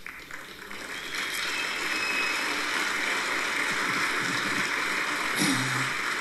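Audience applauding, swelling over the first second or so and then holding steady.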